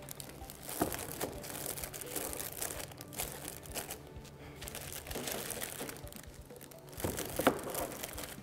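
Plastic bags of packaged scones crinkling faintly as they are handled and laid into a paper-lined plastic bread box, with a few small knocks.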